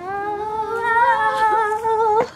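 A girl's voice holding one long unaccompanied note, sliding up in pitch at the start and then held with a slight waver.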